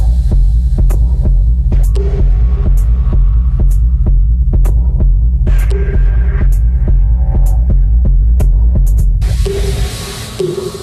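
Minimal techno from a DJ mix: a deep, pulsing bass drone with sparse, sharp percussive clicks and a short synth tone that recurs every few seconds. About nine and a half seconds in, the bass cuts out and a bright hiss-like wash opens up as the track breaks down.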